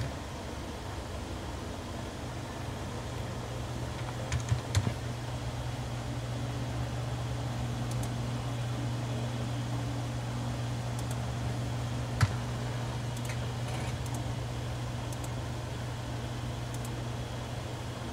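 A few scattered clicks of a computer keyboard and mouse over a steady low hum.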